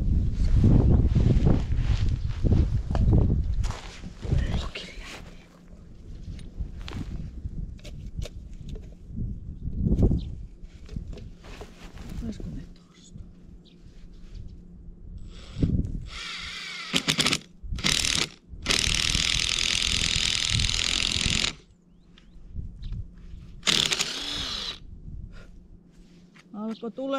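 Cordless Ryobi drill with a wood bit boring into a birch trunk: a few short bursts of the motor's whine about two-thirds of the way in, then a steady run of about three seconds, and one more short burst near the end. A low rumble fills the first few seconds, with scattered light knocks in between.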